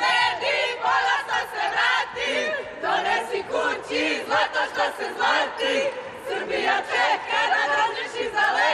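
A group of young women's voices chanting together in a celebration huddle, loud and rhythmic, with shouted rises.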